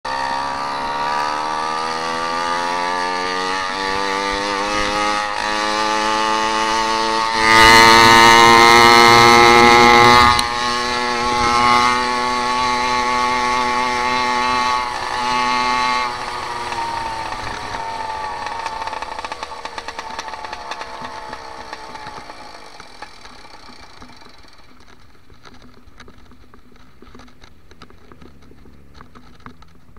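Small engine of a motorized bicycle running under way, its note climbing over the first few seconds and getting louder for about three seconds. From about halfway the pitch falls and the sound fades away as the bike slows, leaving only faint road noise near the end.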